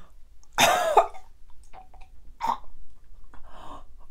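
A woman gagging and coughing on a mouthful of edible chalk: one loud, rough retch about half a second in, then two shorter, weaker heaves later on.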